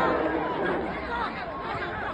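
Several men's voices calling and talking over one another, with no single clear speaker. Louder group singing or chanting fades out during the first second.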